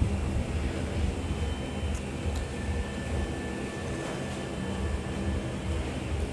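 Steady low background hum and rumble, with a couple of faint clicks about two seconds in.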